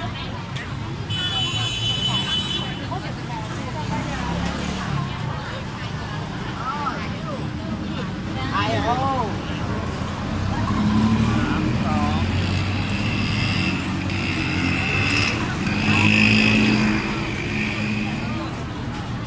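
Busy street traffic: vehicle engines running and passing close by, with a low hum that swells twice, under the chatter of a crowd.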